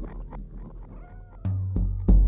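Cartoon cat sound effects: small clicking noises and a short gliding cat-like call, then a sudden deep booming hit from the score about one and a half seconds in, with a second one just before the end.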